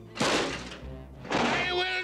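Two heavy impact sound effects from an animated cartoon, about a second apart, each dying away quickly, with music underneath.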